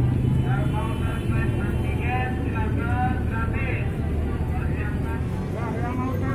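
Busy outdoor ambience: a steady low rumble of traffic with indistinct raised voices calling out over it during the first few seconds.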